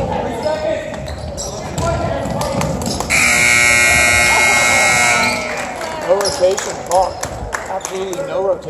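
Gym scoreboard buzzer sounding one steady blast of about two seconds, a few seconds in, marking the end of the period. Around it are crowd voices and basketball bounces on a hardwood court.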